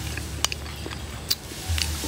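A metal spoon scooping sticky kalamay hati from a glass bowl, giving a few short sharp clicks against the glass, over a low steady hum.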